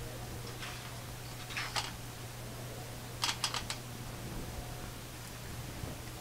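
Light clicks and taps of paint cups being set down and handled: a faint tap early, two taps about a second and a half in, then a quick cluster of four clicks a little past three seconds, over a low steady hum.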